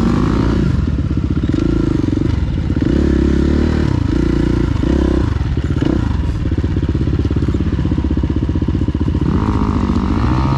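KTM 350 EXC-F single-cylinder four-stroke dirt bike engine heard from the rider's seat, the throttle opened and closed in repeated surges as it rides. Revs climb again near the end.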